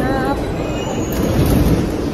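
Steady rumble and running noise of a moving Walt Disney World monorail, heard from inside the car.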